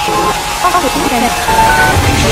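Loud dramatic sound effect with music: a dense noisy wash with wavering pitched sounds and a steady high tone running through it.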